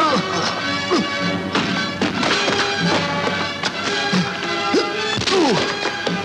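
Dramatic film-score music under a staged fight scene, with several dubbed punch and crash sound effects landing through it.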